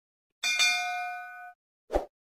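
Sound effects of an animated subscribe button: a click followed by a bright, bell-like ding that rings for about a second and fades out, then a short low pop near the end.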